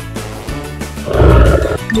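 A gorilla roar sound effect about a second in, short and the loudest sound, over steady background music.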